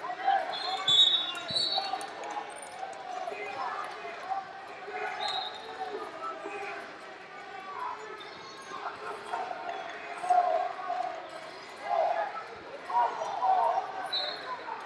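Sports-hall ambience: scattered voices of coaches and spectators echoing in a large hall, with a few thuds and brief high squeaks from the mat area.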